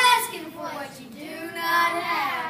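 A child's voice singing, with a drawn-out held note in the second half.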